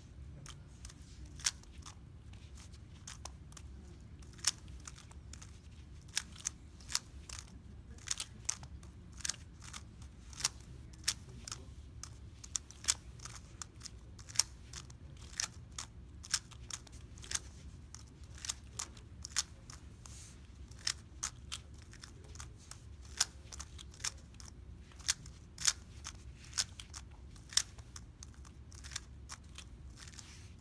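A 3x3 speedcube being turned with bare feet: irregular sharp plastic clicks of its layers turning, a few a second, over a low steady hum.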